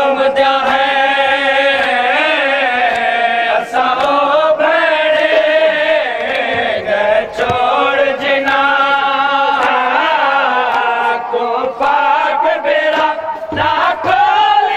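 A group of men chanting a noha, a Shia mourning lament, together in a sustained melody. It is punctuated by sharp chest-beating (matam) strikes about once a second.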